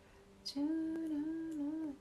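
A woman humming one held, slightly wavering note for about a second and a half, starting about half a second in.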